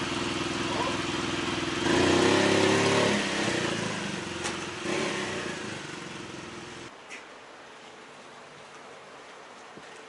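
Motorcycle engine running, revved up about two seconds in, then fading away, until the engine note stops abruptly around seven seconds in, leaving quiet street background.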